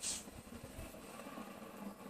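Faint background sound of a televised football match between the commentator's words, heard through a TV speaker in a small room.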